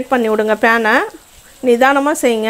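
Baby potatoes sizzling faintly as they fry in spiced oil and are tossed in a nonstick frying pan, under a voice talking that covers most of the two seconds.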